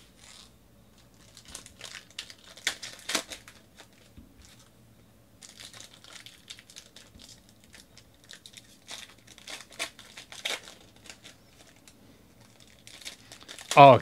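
Foil wrappers of 2019 Panini Donruss Optic football card packs crinkling and tearing as the packs are ripped open by hand, along with cards being handled. The sound comes in irregular crackly bursts, loudest about three seconds in.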